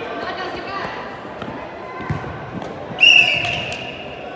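Players' voices and the knock of a soccer ball being played on an indoor court. About three seconds in comes one long, high referee's whistle blast, the loudest sound, as play stops.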